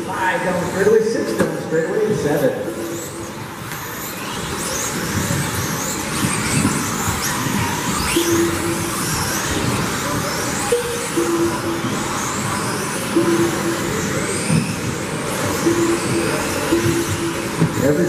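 Several 1/10-scale electric RC buggies with 17.5-turn brushless motors racing on a carpet track: high motor whines rise and fall over and over as the cars accelerate down the straight and brake into the corners.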